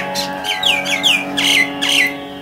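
Common mynas calling: a quick run of about six short, harsh notes, each sliding down in pitch, over soft background music holding a steady chord.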